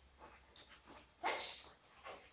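A dog barks once, a short sharp bark about a second in, during a training session.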